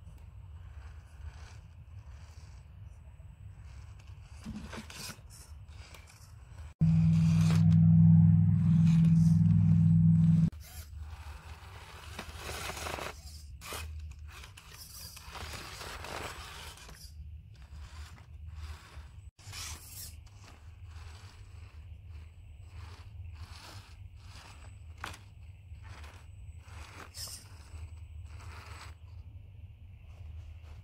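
Axial Capra 1.9 radio-controlled rock crawler with a brushed motor crawling over sandstone rocks: a low motor and gearbox hum with repeated scrapes and crunches of tyres and chassis on rock. A louder low steady hum runs for about four seconds, starting about seven seconds in and cutting off suddenly.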